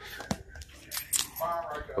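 A ball bouncing off a hard floor and being caught, heard as a couple of sharp knocks, with a short bit of a man's voice near the end.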